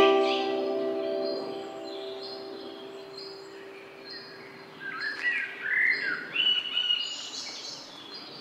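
A last held harp-and-keyboard chord rings out and fades over the first few seconds while small birds chirp and sing. The birdsong grows louder about five seconds in.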